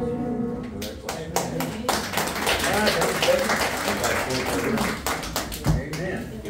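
The last notes of a hymn on upright piano die away, then a small congregation claps, with voices talking over it. A low thump comes near the end.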